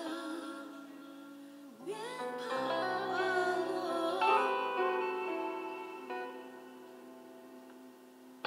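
A woman singing a slow song live with plucked-string accompaniment, holding long notes. Her voice drops out about five seconds in, and the accompaniment's held chord slowly fades.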